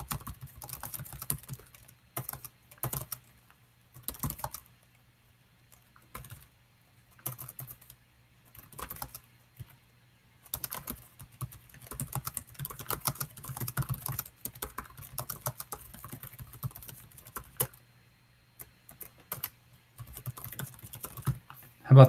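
Typing on a computer keyboard: runs of quick keystrokes broken by short pauses.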